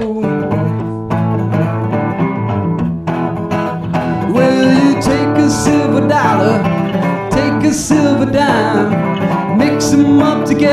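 Solo resonator guitar playing an instrumental break with a steady rhythm.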